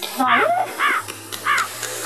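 Crow cawing sound effect: three caws in a steady rhythm, about two-thirds of a second apart, each rising then falling in pitch. It is edited in as a comic cue for an awkward pause.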